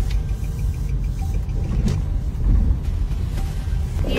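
Steady low rumble of a car on the move, heard from inside the cabin, with a faint knock about two seconds in.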